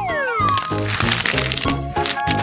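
Upbeat background music with a beat, a descending whistle effect at the start, then a crackling bite sound effect as the jelly candy is bitten into.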